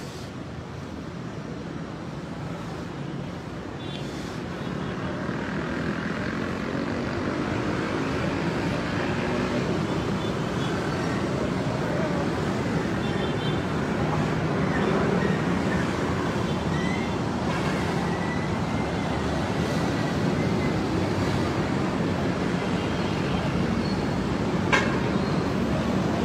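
Steady street noise of traffic with indistinct voices of people, gradually growing louder over the first several seconds. A single sharp click sounds near the end.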